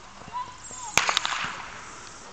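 A sharp crack about a second in, followed at once by a smaller second crack: the starting signal that sets off a 100-metre sprint.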